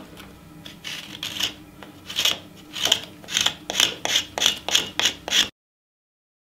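Wooden-handled hand carving tool scraping and cutting into the dry deadwood of a cypress trunk base, in a run of short strokes that quicken to about two or three a second. The sound cuts off suddenly near the end.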